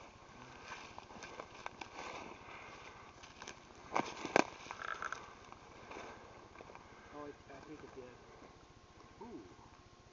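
Footsteps through forest undergrowth, with brush rustling and twigs crackling, and two sharp cracks close together about four seconds in.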